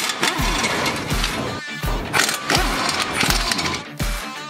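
Background music with a steady beat, over an impact wrench running on a front brake caliper mounting bolt to loosen it, in two stretches with a short break near the middle.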